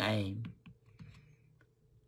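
A man's voice trails off about half a second in, then a few faint, short clicks sound in the pause before speech resumes.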